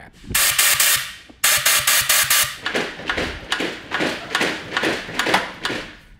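Loud hissing in bursts: two long blasts of about a second each, then a quicker run of short ones.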